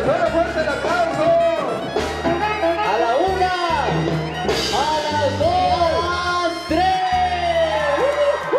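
Loud dance music playing, with melody lines sliding up and down in pitch over a steady, pulsing bass.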